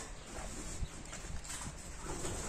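Faint, irregular footsteps on dry, gravelly dirt ground: a few soft low thuds with small scuffs and clicks.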